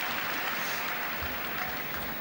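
Arena audience applauding steadily.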